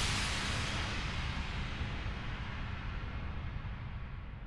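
Logo-ident sound effect: a whoosh hit that fades slowly over a low, steady rumble.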